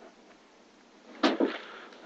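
Faint steady room hiss, then about a second in a brief murmur from a person's voice.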